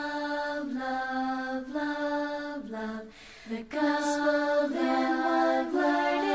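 A slow sung children's song: long held vocal notes that step up and down in pitch, with a brief pause about three seconds in.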